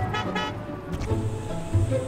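Two short car-horn toots from a Hyundai IONIQ 5 pulling up, in the first half second, over background music.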